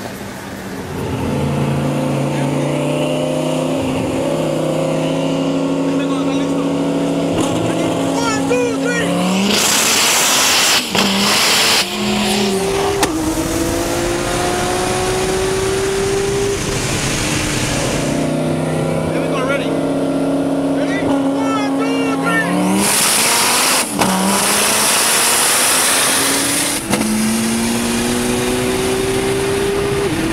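Car engine at full throttle in a roll race, heard from inside the cabin, accelerating hard through the gears. Its pitch climbs, drops briefly at each upshift and climbs again, with a loud burst of rushing noise mid-pull. The whole run is heard twice.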